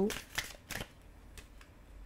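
A deck of tarot cards handled in the hand, giving a few soft, short card flicks and rustles as cards are pulled from the deck and laid down.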